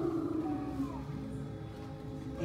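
A vocal wind sound for the snowstorm, a drawn-out voiced 'whoo' that slides down in pitch and ends with a falling glide about a second in, over steady background music.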